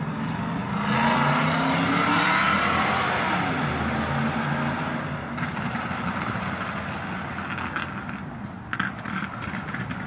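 A road vehicle passing close by, its engine and tyre noise swelling about a second in and fading away over the next few seconds as its pitch drops. A few short clicks follow near the end.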